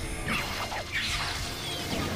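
Anime fight-scene sound effects: several quick whooshing swipes and hits follow each other in the first half.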